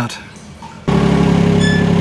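UHI UME12 mini excavator engine running steadily at low revs, heard from the operator's seat; it cuts in suddenly about halfway through after a quieter start.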